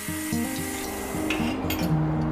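A wooden pen blank rubbing and sliding on a metal bandsaw table as it is handled, with a few short scrapes near the end, over background acoustic guitar music.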